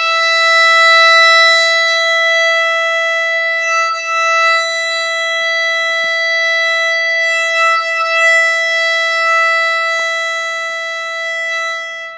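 Violin's open E string bowed as one long, steady note, a tuning reference pitched to A = 441 Hz. It is held throughout, with a few smooth bow changes.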